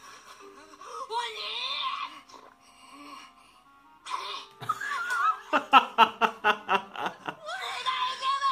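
A man laughing hard: a run of loud, evenly spaced "ha" pulses, about six a second, lasting nearly two seconds in the second half. Before it, soft anime episode audio plays, with a character's voice and background music.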